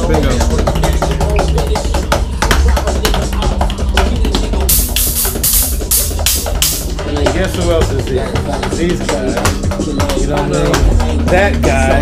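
A drum kit played fast and hard, with a dense run of cymbal hits about five to seven seconds in, together with music that has a heavy bass line.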